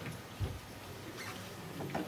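A pause between spoken sentences, picked up by the lectern microphone: quiet room tone with a soft, low thump about half a second in and faint small rustles, as the speaker handles a sheet of paper at the lectern.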